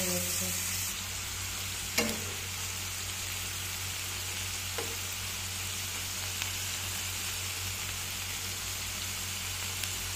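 Small kachki fish sizzling as they fry in oil in a non-stick pan, with a sharp tap about two seconds in and two lighter taps later while they are stirred.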